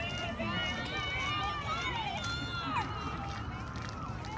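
Several voices from the players and spectators calling out and cheering at once, some in long rising and falling shouts, over a steady low rumble.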